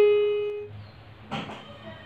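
Electronic keyboard played with its piano voice: a single held note fades and ends well under a second in. A pause follows with only a faint brief noise.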